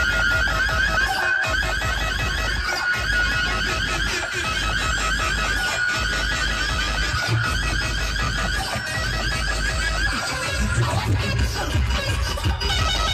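Loud DJ remix music played through a massive truck-mounted competition speaker stack. Deep bass breaks off briefly about every second and a half, under a fast repeating high rising electronic figure.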